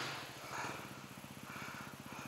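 Enduro motorcycle engine running at low revs: a quiet, fast, even putter.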